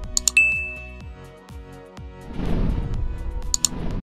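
Background music with subscribe-button sound effects: a quick double click just after the start, then a single bright notification ding that fades within about half a second. The music thins out briefly in the middle and comes back, and another double click comes near the end.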